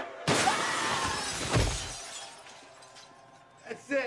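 Glass shattering: a sudden loud crash that dies away over about two seconds, with a low thud partway through.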